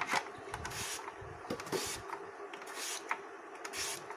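Raw potato pushed back and forth across a handheld steel chips slicer's blade, a rasping scrape with each stroke as thin slices are cut, punctuated by a few sharp clicks.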